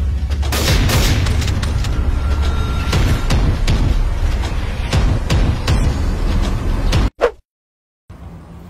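Staged gunfight: a series of sharp gunshots over a loud, steady low rumble. The sound cuts off abruptly about seven seconds in.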